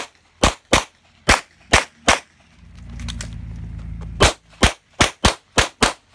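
Pistol fired in rapid strings: six shots over about two seconds, then, after a pause filled by a low rumble, seven faster shots about a fifth of a second apart.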